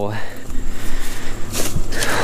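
Gleaner F combine running, a steady, even rumble and hiss.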